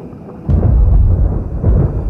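A sudden crack about half a second in, followed by a loud, low rumble of thunder: a sound effect.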